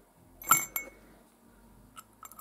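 A light metallic clink with a brief ring about half a second in, followed by a softer tick: a new electrolytic capacitor knocking against the empty aluminium capacitor can it is being fitted into.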